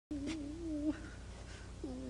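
A voice humming a wavering, fairly low note for nearly a second, then a short second note near the end, over a steady low electrical hum.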